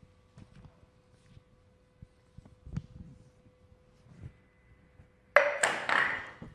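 A concrete slab struck hard with a drinking glass. Near the end there is a sudden loud crack as the slab breaks, followed by a few smaller knocks as its pieces fall.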